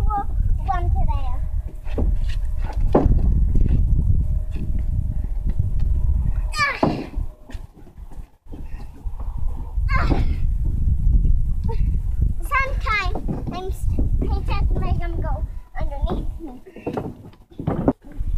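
Wind rumbling on the microphone, with children's high voices calling out now and then and a few hollow knocks on the wooden trailer bed.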